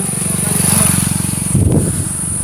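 Rapidly pulsing low rumble of riding along, louder for a moment near the end. Insects keep up a steady high-pitched drone throughout.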